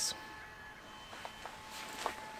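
Quiet background with a faint steady hum, and a few soft rustles and light clicks in the second half as a man gets up from a crouch and moves.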